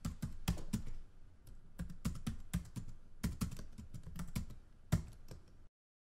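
Typewriter keys striking the platen in an uneven run of sharp clacks, a few a second, stopping shortly before the end.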